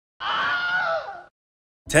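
A short scream-like cry lasting about a second, its pitch falling away at the end.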